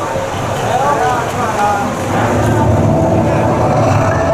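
A loud voice with bending pitch over a steady low rumble that grows stronger in the second half, between passages of the dance troupe's music.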